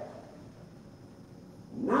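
A man's voice in a reverberant hall: a drawn-out word fades away, a pause of faint room tone follows, and the voice starts again near the end.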